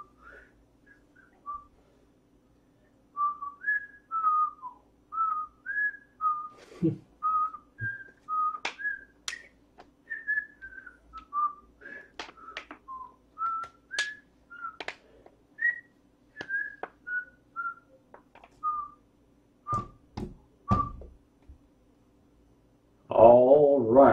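A person whistling an idle, wandering tune in short notes, with sharp clicks among the notes.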